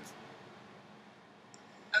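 Faint steady background hiss of room tone, with no distinct sound.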